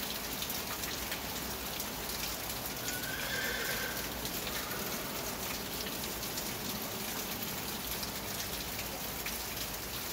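Steady patter of rain on the covered arena's roof, with a horse whinnying briefly about three seconds in.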